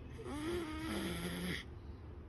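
A baby vocalizing: one drawn-out coo of about a second and a half that drops lower in pitch partway through.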